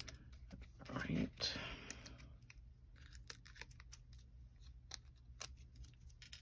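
Paper crafting handling: small clicks and rustles of cardstock and peeled foam-dimensional backings, with a louder rub about a second in as a cardstock panel is pressed down onto the card base.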